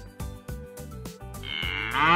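Light background music with plucked notes, then, about a second and a half in, a cow starts to moo loudly.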